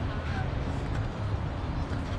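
Outdoor ambience: a low, unsteady wind rumble on the microphone, with faint distant voices in the background.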